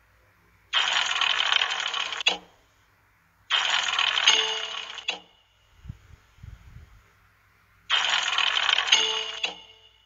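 Online video slot Montezuma's electronic sound effects for its last free spins: three bursts of about a second and a half each, each stopping abruptly as the reels come to rest.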